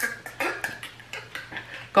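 A person making short, breathy mouth and throat noises with the tongue stuck out, miming scrubbing the tongue too hard, with a few small clicks scattered through.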